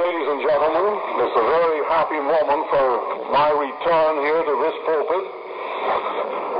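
A man speaking in an old, narrow-band recording with steady hiss; the words are not made out.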